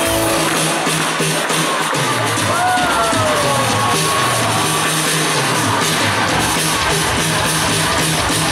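Live pop-rock band playing an instrumental passage on electric guitars, bass and drums, heard from among the audience. A high note slides up and back down about two and a half seconds in.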